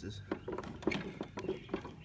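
A man's voice, with a series of light, sharp clicks and clinks through it.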